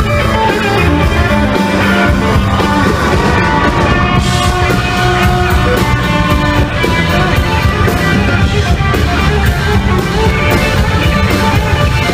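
Live rock band playing an instrumental passage: electric guitar over bass guitar and drum kit, loud and continuous.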